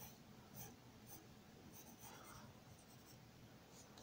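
Faint scratching of a pencil's graphite tip on paper: a handful of short, light strokes as lines are sketched.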